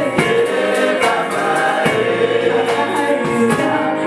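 Gospel praise song sung by a worship team of several voices, men and women together, over keyboard accompaniment with a steady beat.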